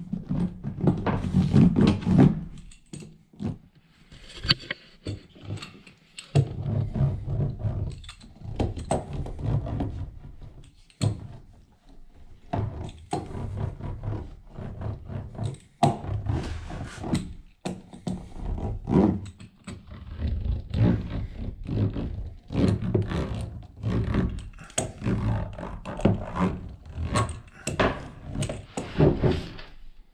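A small hand roller is pressed back and forth over stick-on, foil-faced sound-deadening panels on the sheet-metal rear wheel well of a Sprinter van. It makes a run of rumbling strokes with knocks and foil crinkle, with a quieter pause a few seconds in.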